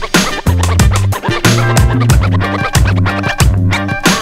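Hip hop backing track with turntable scratching over a heavy bass line and a steady beat.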